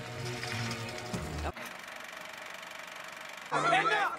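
Film-score music holding low sustained notes, which stops about one and a half seconds in. It gives way to about two seconds of a fast, even rattling hiss, and then voices begin near the end.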